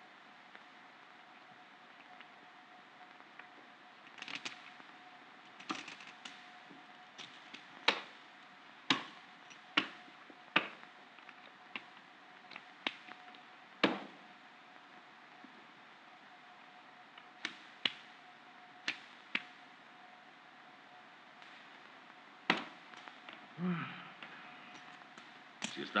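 Scattered sharp clicks and knocks at uneven intervals, about twenty of them, over a faint steady tone.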